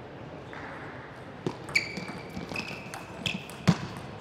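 Table tennis rally: the celluloid ball clicks sharply off bats and table about six times, starting about a second and a half in, with the loudest hit near the end. Short high squeaks of players' shoes on the court floor come in among the hits.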